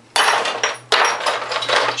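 Loose tool handles and knobs rattling and clattering in a plastic storage box as a hand rummages through them, in two long bouts with a short pause about a second in.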